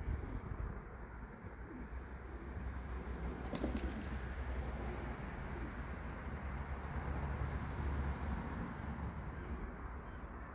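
Steady outdoor background noise with a low rumble, and a bird calling.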